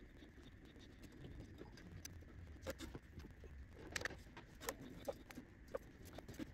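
Faint, irregular clicks and scrapes of a small tubing cutter being turned by hand around a steel fuel line, scoring it so the end can be snapped off.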